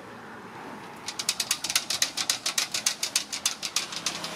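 A rapid run of sharp clicks, about eight a second for roughly three seconds starting about a second in: a monkey's hands and feet striking a hollow metal lamp pole as it climbs.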